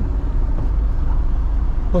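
Car running, a steady low rumble heard from inside the cabin.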